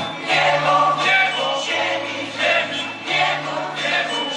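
A group of young voices singing a Christmas carol together, with long held low notes underneath.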